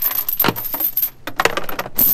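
Heavy anchor chain rattling and clinking link against link as it is pulled by hand out of a boat's anchor locker and laid across the fibreglass bow, in an irregular run of metallic clanks.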